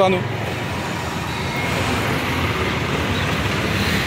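Steady road traffic noise, swelling slightly toward the end.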